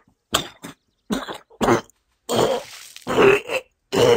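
A man's voice acting out a wounded character coughing and choking, in a string of about six short, rough bursts.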